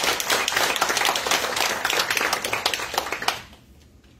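Audience applauding: dense, steady hand clapping that dies away quickly about three and a half seconds in.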